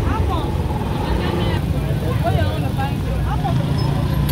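Busy roadside street-market ambience: indistinct chatter from several people over a steady low rumble.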